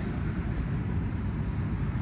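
Wind blowing across the microphone: a steady low rumble.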